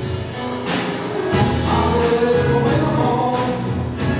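Live electro-tango band playing on stage, full band music with held notes and percussion.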